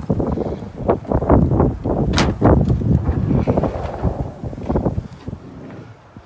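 Sliding side door of a Nissan NV200 cargo van being unlatched with a sharp click a little over two seconds in and rolled open, with knocks and handling noise, under wind buffeting the phone's microphone.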